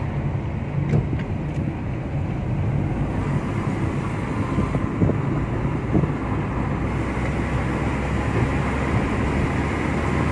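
Steady engine and road rumble of a car driving, heard from inside the cabin, with a few faint knocks.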